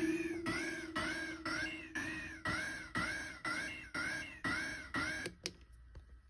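Eurorack modular synthesizer voice (a Joranalogue Generate 3 oscillator with its pitch swept by envelopes) playing a repeating pitched note about twice a second, each note arching up and back down in pitch. The notes fade away and stop a little after five seconds, followed by a single click.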